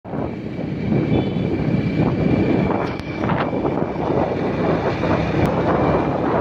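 Vehicle running along a road, with wind rumbling on the microphone and a faint steady high whine under it.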